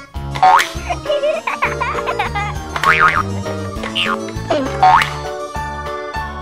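Upbeat children's background music with a steady bass line, overlaid with cartoon sound effects that glide up and down in pitch several times.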